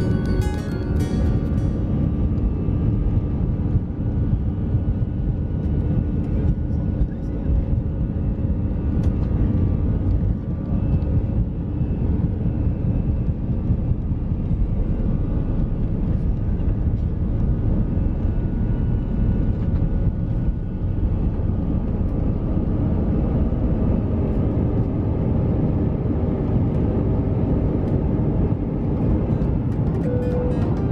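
Airliner jet engines at take-off thrust, heard inside the cabin as a loud, steady rumble during the take-off roll, with the wheels rumbling on the runway.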